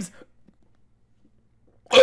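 A man's short, sharp grunt ('uh') about two seconds in, after a near-silent pause; the tail of his speech is heard at the very start.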